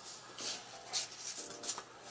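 Faint rustling and rubbing as a mini backpack and a sheet of packing paper are handled.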